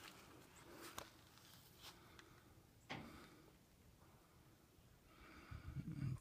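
Near silence, with a few faint clicks about a second apart.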